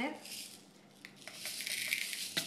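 Thin clear plastic crinkling and rustling as it is handled, a hissy rustle that builds about halfway through.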